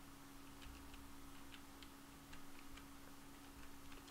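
Faint keystrokes on a computer keyboard: a quick, irregular run of light clicks while a word is typed, over a low steady electrical hum.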